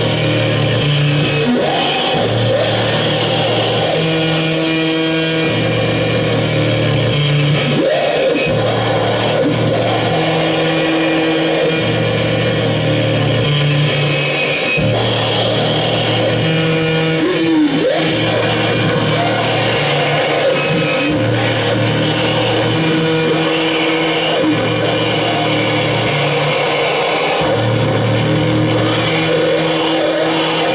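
Live noise music from electronics and effects boxes: a loud, dense drone with low pulsing tones that cut in and out every second or two, held higher tones above, and an occasional sliding pitch.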